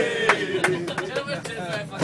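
A man's drawn-out vocal sound that falls slowly in pitch, with a series of sharp knocks, about seven in two seconds.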